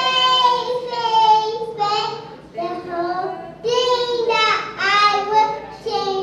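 A three-year-old child singing into a handheld microphone: several held, wavering notes in short phrases with brief breaks between them.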